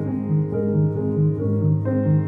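Solo piano improvisation: a steady repeating figure in the low register, about two notes a second, over a held bass note, with chords changing above it.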